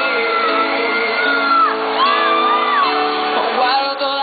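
A girl singing live into a microphone over backing music, belting two long high notes that slide up and down, the second starting about two seconds in.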